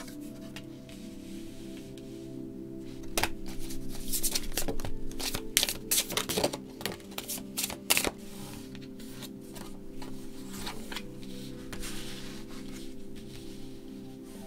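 Soft background music with steady held tones, over tarot cards being drawn from the deck and laid down on a cloth-covered table, with a cluster of sharp card snaps and flicks between about three and eight seconds in.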